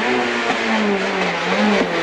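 Renault Clio Williams rally car's 2.0-litre four-cylinder engine heard from inside the cabin, running hard over loud road and cabin noise. Its pitch sags slightly through the middle and briefly rises near the end.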